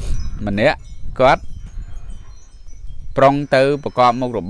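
A man's voice speaking in short bursts, about half a second in, again a second in, and over the last second, over faint high tinkling like wind chimes.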